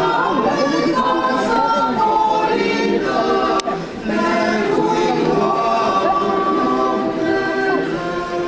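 Mixed choir of women's and men's voices singing a Romanian Christmas carol (colindă) a cappella in held chords, with a short break between phrases about three and a half seconds in.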